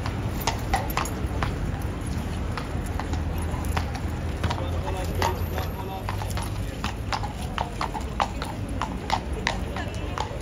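A cavalry horse's shod hooves clopping on stone paving and cobbles as it steps and turns on the spot, with irregular strikes a few times a second.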